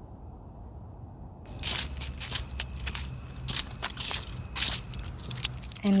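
Footsteps crunching on dry ground outdoors, an irregular run of crackly steps starting about a second and a half in, over a low rumble.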